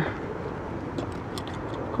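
Steady outdoor background noise with a few faint, light clicks as the tonneau cover's mounting clamp is handled at the truck bed rail.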